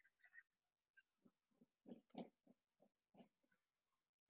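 Near silence: the call's audio almost dead, with a few very faint, indistinct short sounds in the middle.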